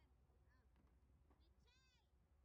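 Near silence, with one faint, brief high-pitched call near the end.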